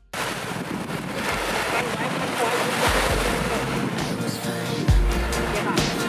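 Small sea waves washing onto a sandy beach in a steady rush, with wind on the microphone.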